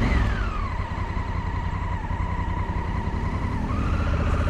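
Honda Africa Twin 1000's parallel-twin engine running at idle with a steady low pulse, picking up revs near the end as the bike starts to pull away. A whine falls in pitch during the first second, then holds steady.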